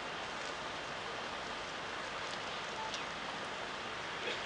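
Steady, even background hiss of an outdoor night crowd scene, with a couple of faint clicks about two and three seconds in.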